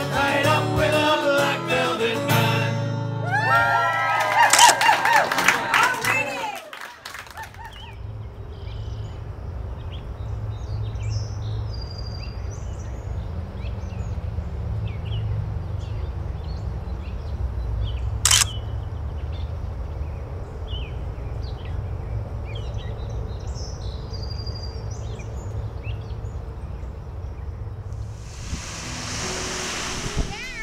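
Music with a crowd singing along for about the first six seconds, then cut off. After that a steady low rumble with scattered bird chirps and one sharp click a little past the middle. Near the end, the hiss of a wave washing up a beach.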